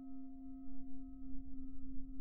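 A single struck chime tone ringing on evenly in the background music, with a few overtones above it and a low rumble beneath.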